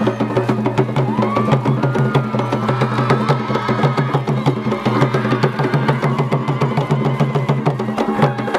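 Kavango traditional drum music: fast, steady drum strokes over a pulsing low beat, with a gliding melodic line above it.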